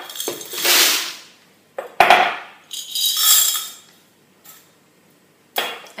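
Dry pasta poured into a glass measuring jug, the pieces rattling against the glass in a couple of pours. There is a sharp knock about two seconds in.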